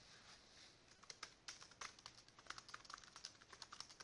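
Faint typing on a computer keyboard: a quick, irregular run of key clicks starting about a second in, as a short sentence is typed.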